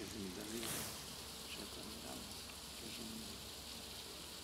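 Faint, indistinct voices murmuring in the background over a steady low hiss.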